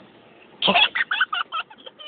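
A person laughing in a quick run of short bursts that opens with an 'oh' about half a second in.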